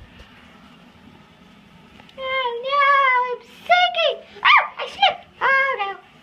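High-pitched wordless cries. About two seconds in comes one long held cry, followed by four shorter ones that each rise and fall.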